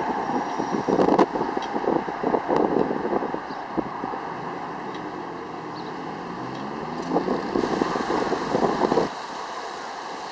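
Metra commuter train's diesel locomotive working hard as the train pulls away, with wind gusting on the microphone. The sound drops abruptly about a second before the end.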